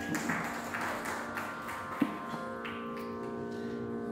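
Quiet Carnatic concert music: a steady drone of held tones, with several soft taps in the first second and a half and a single sharp knock about two seconds in.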